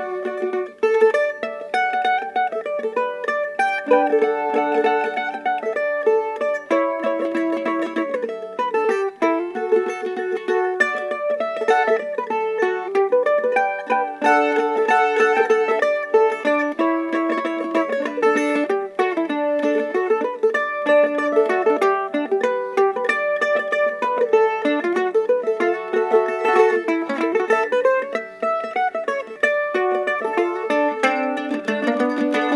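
HydeMade resonator mandolin, a handmade red F-style mandolin with a metal resonator cone, played solo: a continuous run of quickly picked notes and chords with a bright, ringing tone.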